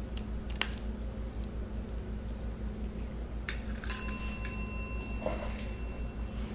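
Chrome service bell rung once by a cat about four seconds in: a sharp ding whose ringing fades over a second or so, after a couple of light taps on the bell.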